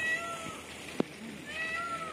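Indian peafowl calling: two short calls about a second and a half apart. A single sharp click falls between them, about a second in.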